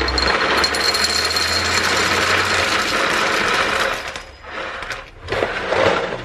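Nutri-Grain breakfast cereal poured from its box into a bowl, a dense steady rattle of dry pieces for about four seconds. A second short pour follows near the end.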